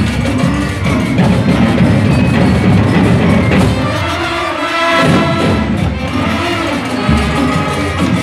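Marching band with brass and drum line playing a Latin-style tune live, horns holding chords over percussion; the low drums thin out briefly about halfway through, then come back in.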